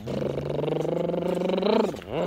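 A man's loud, drawn-out vocal noise held on one pitch for nearly two seconds, rising in pitch and getting louder just before it stops.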